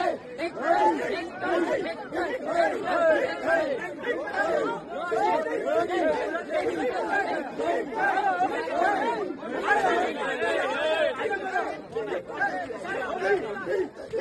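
A dense crowd of people talking and calling out all at once, many voices overlapping without a break.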